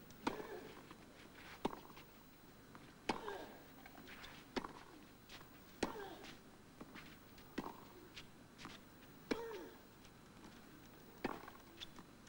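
A tennis rally on clay: the ball is struck back and forth by rackets, a sharp hit about every one and a half seconds. A short grunt from one player comes on every other hit.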